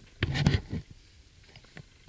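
A brief burst of rustling and knocking from a person shifting on a bed with the camera in hand, about half a second long near the start.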